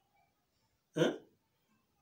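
A single short voiced sound from a person, like a brief vocal interjection, about a second in; otherwise near silence.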